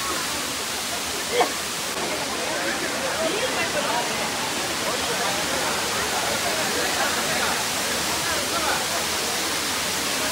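Waterfall pouring down a granite rock face, a steady dense rush of water. Voices of people chattering can be heard under it, and a short sharp sound stands out about a second and a half in.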